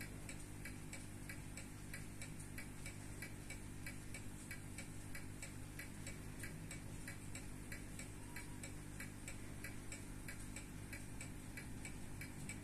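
Soviet Slava mechanical wristwatch ticking, a rapid, even run of light ticks over a faint steady hum.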